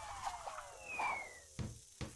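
Cartoon falling-bomb whistle sound effect: several tones gliding steadily down in pitch, with a short low thump near the end.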